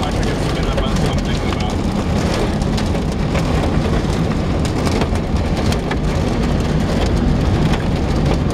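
Heavy rain hitting a moving car's glass and body, with frequent sharp ticks of drops striking, over the low rumble of the car on the road.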